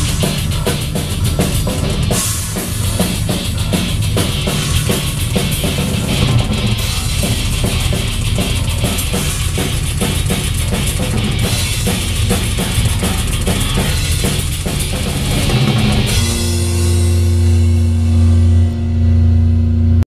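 A live rock band plays loud, with distorted electric guitar, bass guitar and a drum kit pounding out rapid strikes and cymbals. About sixteen seconds in the full band drops out and a single low note is held, ringing steadily to the end.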